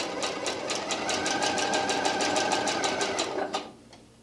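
Singer sewing machine running a straight stitch with a twin needle: rapid, even needle strokes over a motor whine, stopping about three and a half seconds in.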